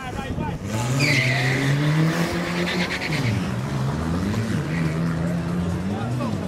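Two small hatchback drag cars launching off the start line. Engines rev hard, with the pitch climbing, dropping back at gear changes about three and again about four and a half seconds in, then climbing again. A brief tyre squeal comes just after the launch.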